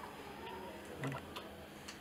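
Quiet room with a few faint, scattered clicks and slight movement noise.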